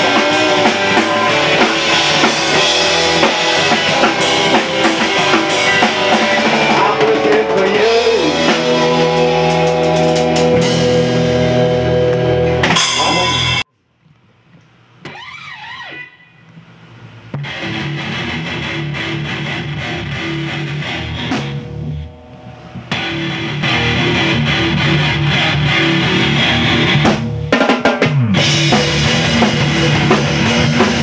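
Rock band of drum kit, electric guitar and bass guitar playing an instrumental passage. About halfway through the band stops abruptly, a few quieter sliding notes follow, and the full band comes back in a few seconds later.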